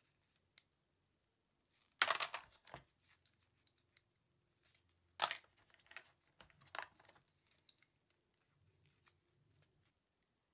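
Brass rifle cartridge cases clinking as they are handled and dropped into plastic sorting bins, with a few light clatters, the loudest about two and five seconds in.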